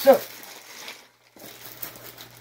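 Black plastic trash bag crinkling and rustling as it is pulled and handled, with a brief break about a second in.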